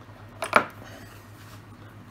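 A single short click about half a second in, from the piano wire and hinge parts being handled, over a low steady hum.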